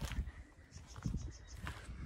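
Quiet outdoor ambience: soft irregular thuds of footsteps through grass, with a few faint bird calls about a second in.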